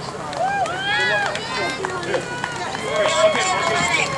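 Indistinct voices of several people talking and calling out outdoors, with no clear words.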